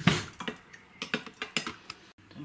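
A metal spoon stirring loose tea in a glass jug, clinking and tapping against the glass in a quick irregular series of light clicks, the loudest at the very start.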